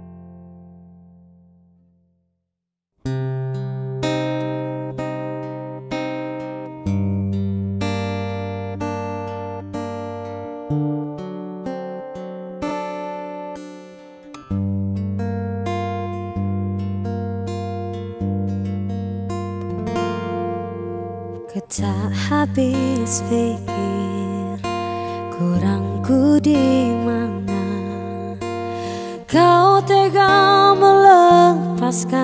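An acoustic pop song fades out, with about a second of silence. Then a new acoustic-guitar intro of picked notes and chords begins about three seconds in. Near the end a woman's voice comes in singing over the guitar.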